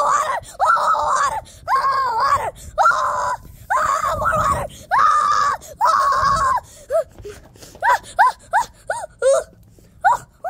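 A child's high-pitched voice screaming over and over in drawn-out yells, breaking into short rising yelps near the end.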